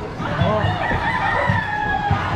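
A rooster crowing once, a long drawn-out call that falls slightly in pitch through the second half, over the chatter of a street crowd.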